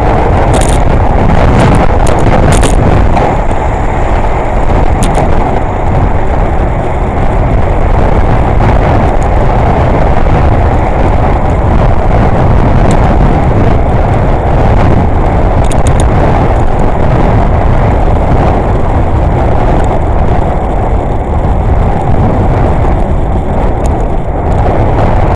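Steady wind rush and road-traffic noise picked up by a helmet-mounted camera on a moving bicycle, loud and low, with a few sharp clicks near the start and again about 16 seconds in.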